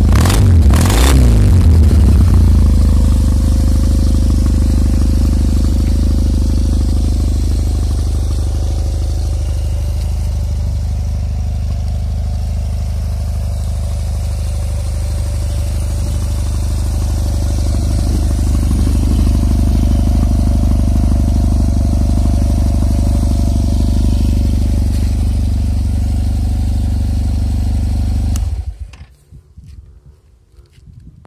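Yamaha T-max 500 scooter's parallel-twin engine idling steadily through an aftermarket exhaust silencer, with two brief knocks at the start. The engine stops abruptly near the end.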